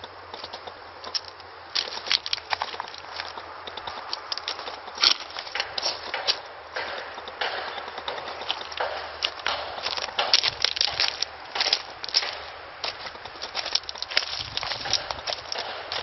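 Footsteps crunching on loose gravel, irregular and continuous as someone walks slowly around.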